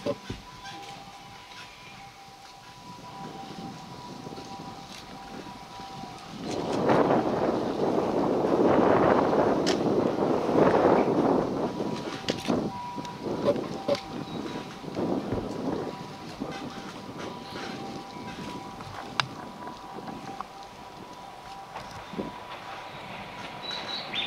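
A train running past out of sight: a rumble that swells about seven seconds in, stays loud for about five seconds, then dies away, with a faint steady whine before and after.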